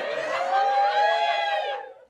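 Sitcom audience giving a long, drawn-out collective "oooh" of many voices at once, swelling and then fading away just before the end.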